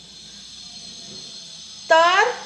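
A pause in a woman's speech filled with steady low background hiss and a faint high-pitched whine, then her voice starts again abruptly near the end.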